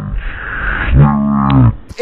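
A pack of racing kart engines running hard as the karts go by. One engine passes close and loud in the second half, then drops away near the end.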